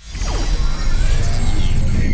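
Channel intro jingle: synthesized sound effects with sweeping tones over music with a heavy bass, starting suddenly out of silence.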